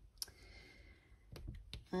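A few sharp, light clicks of a diamond-painting drill pen and resin drills tapping against the plastic drill tray and the canvas, one early and three close together in the second half.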